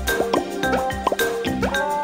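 A short music cue with a run of quick rising blips, several short upward pitch slides over steady musical notes.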